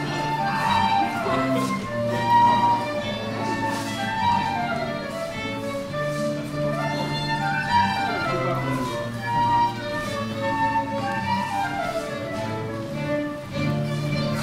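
Live English country dance band playing a dance tune, fiddle and flute carrying the melody over a steady bass line.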